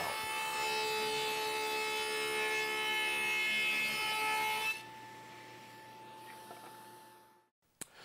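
Table saw with a quarter-inch dado blade cutting a dado in a half-inch oak board: a steady whine with many overtones. About four and a half seconds in, the cut ends and the saw runs on more quietly, then the sound cuts off abruptly near the end.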